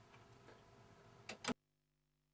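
Near silence: faint room tone, then two short clicks close together about a second and a half in, after which the sound cuts off suddenly.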